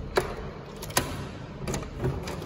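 Two sharp clicks under a second apart as a wooden door's metal lever handle and latch are handled, over low rumbling handling noise.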